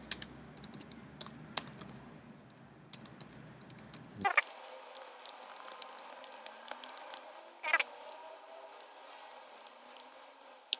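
Scattered keystrokes on a computer keyboard, typing at an irregular pace, with two louder brief noises about four and eight seconds in.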